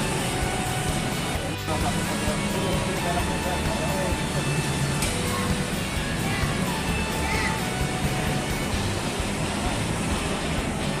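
Background music with indistinct voices and traffic noise beneath it.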